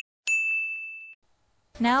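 A single bright, bell-like ding, struck once and ringing for about a second before it cuts off: a chime sound effect marking a scene transition.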